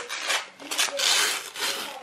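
Wrapping paper on a gift being torn and rustled open by hand, a run of papery rasps, loudest about a second in.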